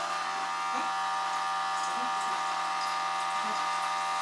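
A steady electric motor hum with a constant whining tone, unchanging in level.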